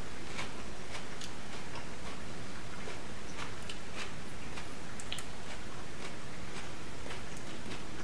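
Mouth-closed chewing of a crunchy raw Aji Limon pepper: faint, irregular crisp crunches over a steady room hiss.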